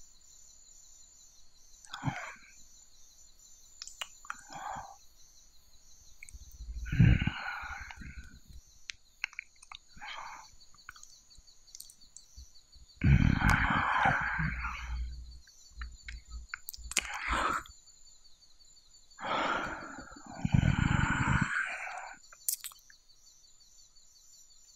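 Close-miked mouth sounds from a voice actor: wet licking noises and breathy sighs in irregular bursts, with two longer stretches in the second half. Underneath runs a steady bed of chirping forest ambience.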